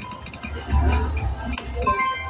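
Video slot machine playing its electronic tones and quick clicking sound effects as the reels spin, over a low casino-floor hum.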